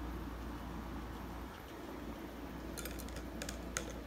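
A steady low hum, then a quick run of light, sharp clicks and taps starting a little under three seconds in, the last one the loudest.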